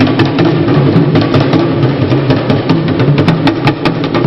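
Drum music: sharp percussive clicks several times a second over a low drum line that moves up and down in pitch.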